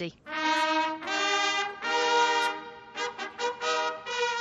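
Ceremonial brass fanfare on trumpets: three long held notes, then a run of shorter, quicker notes near the end.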